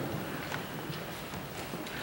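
Footsteps and shuffling in a quiet church, a few light knocks spread over about two seconds.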